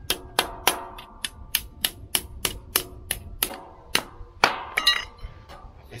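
Hammer striking a thin steel rod on concrete in a steady run of blows, about three a second, each with a short metallic ring.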